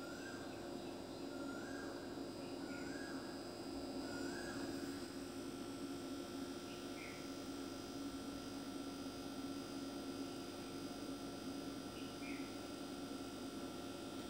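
Faint background sound: a steady low hum with short high chirps, several close together in the first five seconds and a couple more later.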